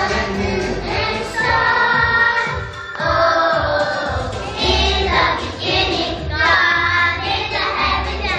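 A small group of young children singing a song in unison into microphones, over a musical accompaniment with a steady bass line.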